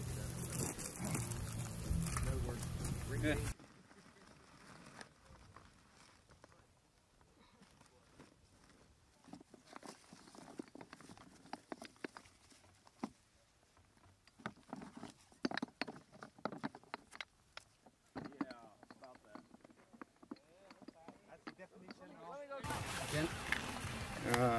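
Outdoor noise with a low steady hum for the first few seconds, then a cut to near silence broken by scattered faint clicks and knocks as blocks packed in a crate are handled. Near the end the outdoor noise returns.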